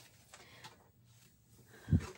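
Faint handling noise with a single low, soft thump near the end, as a hand reaches onto the desk with planner supplies.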